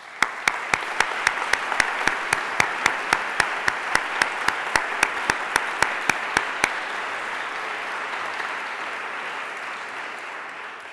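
An audience applauding, with one person's sharp claps close by standing out at about four a second; those close claps stop about two-thirds of the way in and the applause then tapers off.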